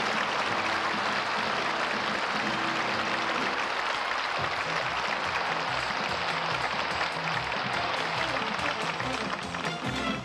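An audience applauding over a band playing entrance music.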